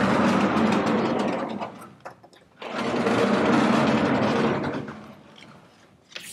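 Vertically sliding lecture-hall blackboard panels being moved up and down, a steady mechanical rumbling grind in two runs of about two seconds each with a short break between.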